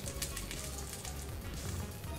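A handful of small translucent plastic dice rolled out of the hand onto the table, a brief scatter of light clicks, over background music.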